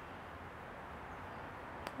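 Quiet, steady outdoor background noise with a faint low rumble, and one brief click near the end.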